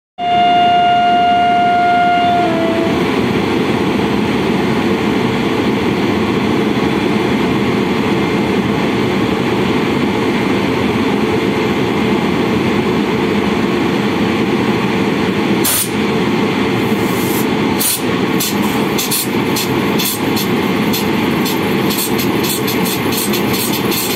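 An electric train horn sounds one steady note for about two seconds, then gives way to the steady rumble of a train rolling through the station. From about sixteen seconds in, sharp wheel clicks over rail joints come in, more and more often.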